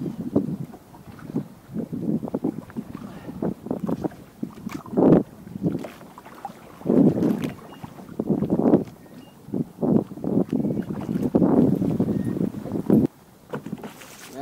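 Irregular bumps, knocks and water splashes on a bass boat as a large largemouth bass is lowered over the side and released, with wind buffeting the microphone.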